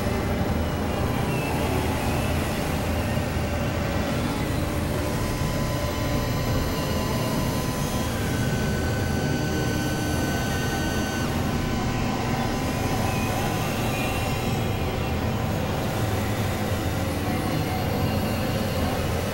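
Dense experimental noise drone built from several layered, processed music tracks: a steady, heavy low rumble with a hiss above it. A couple of faint high held tones come and go in the middle.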